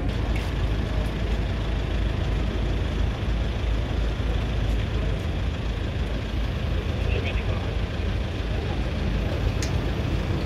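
Steady low rumble of a V8 SUV's engine idling close by, with a crowd's indistinct chatter over it.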